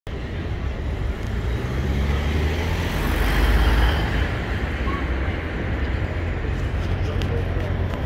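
Urban road traffic running steadily, with a vehicle's engine rumble swelling to its loudest about three to four seconds in, over the voices of passers-by.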